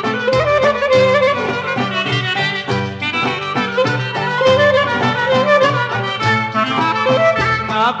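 Instrumental break of a Greek tsamiko song on an old record: a clarinet plays the lead melody over a steady orchestral rhythm accompaniment. The singer's voice comes back in at the very end.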